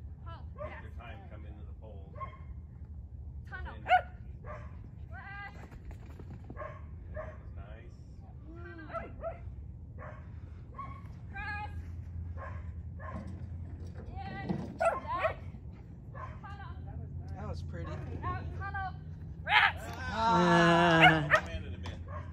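Dog barking and yipping repeatedly in short, high calls while it runs an agility course.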